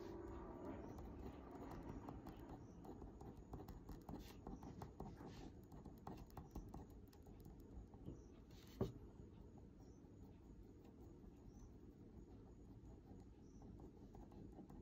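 Fine-tip ink pen making short shading strokes and dots on paper: faint, quick tapping and scratching, with one sharper tap about nine seconds in.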